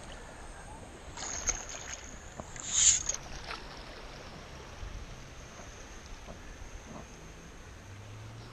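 Shallow water splashing and sloshing around wading legs and a sand scoop being worked in the bay bottom. The loudest splash comes about three seconds in, with a few smaller ones about a second in.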